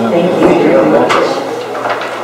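People talking, the words not made out, with a couple of short knocks about half a second and a second in.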